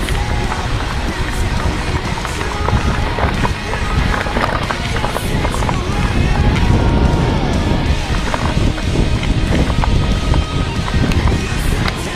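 Mountain bike riding down a rough dirt trail: wind noise on the microphone and the bike rattling over bumps, with music playing throughout.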